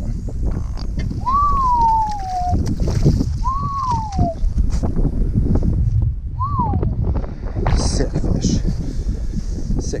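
Strong wind buffeting the microphone as a steady low rumble. Over it come three clear whistle-like tones, each rising and then falling, about one, three and a half and six and a half seconds in; the last is the shortest.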